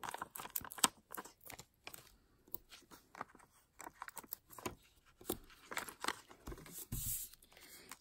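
Adhesive foam dimensionals being peeled off their paper-lined backing sheet: irregular small crackles and tearing sounds of paper and adhesive.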